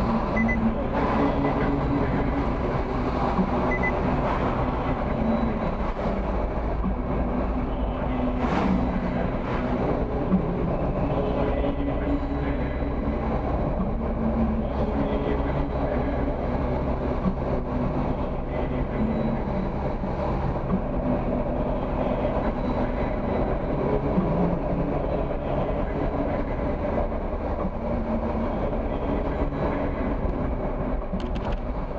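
Car interior driving noise: a steady low rumble of tyres on the road with the engine humming, its pitch wavering slightly with speed.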